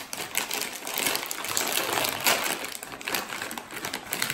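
Plastic snack bag of chili crackers crinkling and crackling as it is pulled open by hand, a dense run of small rustles and clicks.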